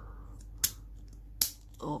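Two sharp clicks of hard plastic Mini 4WD chassis parts being pressed and snapped together by hand, about three quarters of a second apart.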